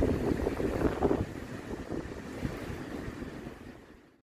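Wind rushing over the microphone with the rumble of heavy surf, fading out to silence near the end.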